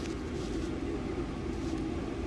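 Steady low background rumble with a faint hum, without any distinct events.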